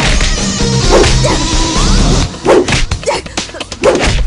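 Fight-scene soundtrack: background music with short shouts and cries, then from about halfway a quick run of punch and whoosh hit effects.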